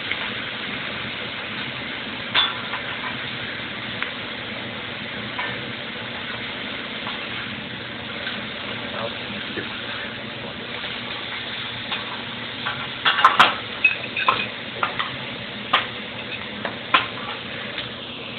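Food sizzling steadily on a hot steel hibachi griddle while metal spatulas work it, with a single sharp clack early on and a quick run of sharp metal clacks on the griddle in the last third.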